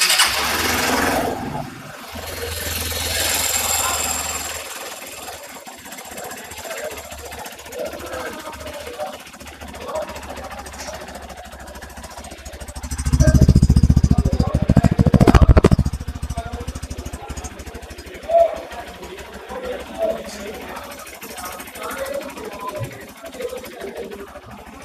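Hero XPulse 200 Pro's 200cc single-cylinder engine started on the electric starter, then idling. About halfway through it is revved hard for roughly three seconds before dropping back to idle.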